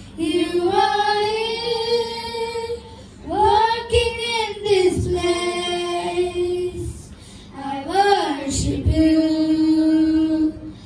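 Children's voices singing a worship song into handheld microphones, in phrases of long held notes broken by short breaths.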